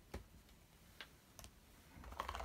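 Near silence with a few faint clicks: a small plastic figure on its stand being handled and set down on a table.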